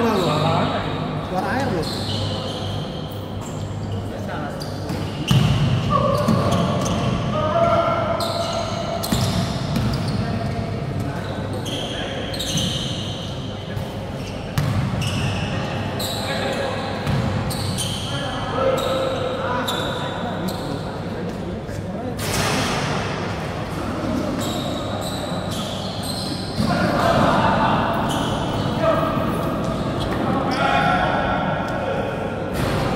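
A basketball bouncing and striking the hard floor of an indoor court, with short sharp thuds through play. Players' voices call out, and the sound echoes in a large hall.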